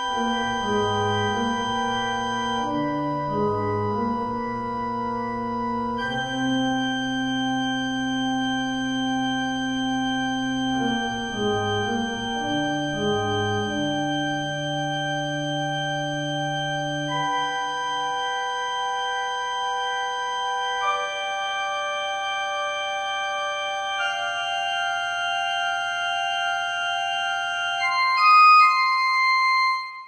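Slow organ music: long held chords over a moving bass line. About halfway the bass drops out and higher chords carry on alone. Near the end a short, brighter high figure sounds before the music stops.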